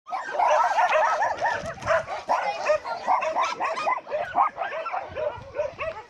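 Dog yipping, a rapid run of short high calls, several a second.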